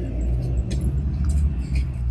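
A tour coach's engine idling: a steady low rumble.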